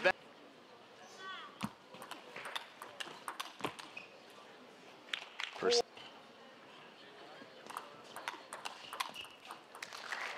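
Table tennis ball being hit back and forth in rallies: sharp, irregular clicks of the ball off the paddles and the table, about two a second, in two runs with a short pause between.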